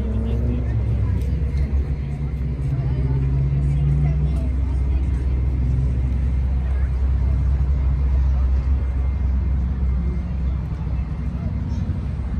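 Steady low rumble of outdoor background noise, with a person's voice in the first few seconds.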